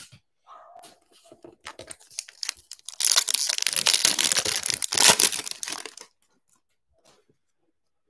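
A trading-card pack's wrapper being torn open: a few faint crinkles, then a loud crackling tear lasting about three seconds from about three seconds in.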